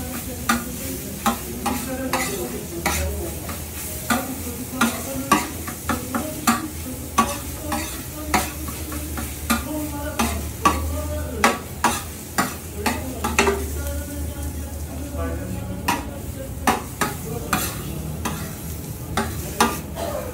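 Knife blade chopping and scraping an egg and tomato filling on a hot steel griddle: sharp metal taps about every half second over a steady sizzle of frying.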